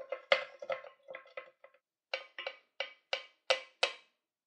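Wooden spoon knocking against a glass jar of dye as it is stirred: a run of sharp clinks, each with a short ring, about three a second, pausing briefly near the middle.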